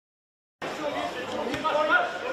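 Total silence for about half a second, then indistinct voices calling and chattering from the match ambience, with a single sharp knock about one and a half seconds in.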